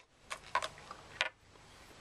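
A few light clicks of small plastic timer parts being handled, spread over about a second.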